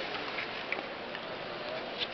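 Ice rink ambience: a steady wash of hall noise with faint distant voices, and a few short, sharp clicks scattered through it.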